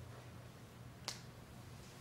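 A single short, sharp click about a second in, over a faint steady low hum.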